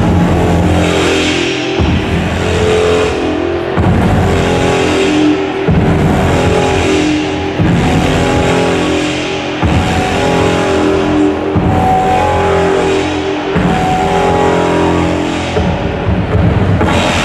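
Slow, atmospheric music for a dance routine with held tones. A deep bass surge comes about every two seconds, each with a hissing swell above it that rises and fades.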